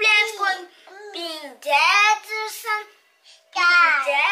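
A young child singing in a high voice, in drawn-out gliding phrases with a short break about three seconds in.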